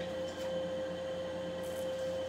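A steady electrical hum with one constant tone. Over it are faint short scrapes of playing cards being dealt onto the felt, about half a second in and again near the end.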